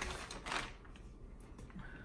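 Clear plastic bag crinkling and rustling as a cigar box is pulled out of it, with a few small handling ticks, loudest in the first half-second and then fading to faint handling.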